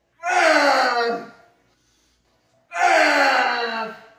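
A man's loud, strained groans under a 230 lb incline barbell bench press: two drawn-out cries of about a second each, falling in pitch, one just after the start and one near the end.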